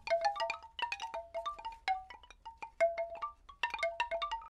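A quick, irregular run of struck, chime-like tuned percussion notes on a few pitches, each ringing briefly.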